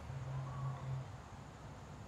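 A faint, low, closed-mouth hum from a man's voice for about the first second, then quiet background.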